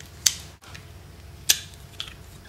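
Two sharp clicks about a second and a quarter apart, from a Phillips screwdriver and small screws being worked into a plastic battery pack on a round plastic plate.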